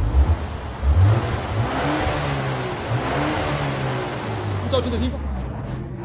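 BMW X1 M35i's 2.0-litre turbocharged four-cylinder through its factory exhaust, revved a few times: the pitch climbs and falls about one to three seconds in, then settles back toward idle. A smooth, very quiet sound with the stock mufflers and resonators in place.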